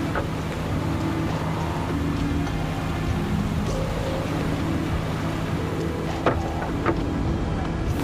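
A small fishing boat's engine running steadily at sea, under low sustained music, with a couple of short knocks about six and seven seconds in.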